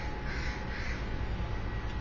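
A bird's harsh call, heard over a steady low hum.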